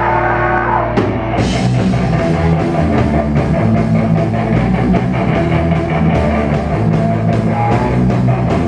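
Hardcore punk band playing live: distorted electric guitars, bass and drum kit. A held chord rings for about the first second, then the band breaks into a fast, steady drum-driven beat.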